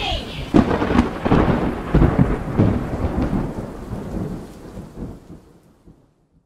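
Thunderstorm: heavy rain with rolling thunder and several sharp cracks in the first half, fading out to silence over the last two seconds.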